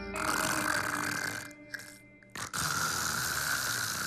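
A sleeping man snoring loudly, two long snores with a short pause between them.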